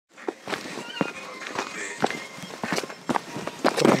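Footsteps on a dirt trail strewn with fallen leaves, about two steps a second.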